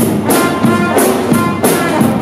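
Live brass band playing: trombones, trumpet and sousaphone over a drum kit, with cymbal strikes keeping a steady beat.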